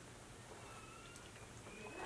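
Near silence: faint room tone with one or two faint ticks.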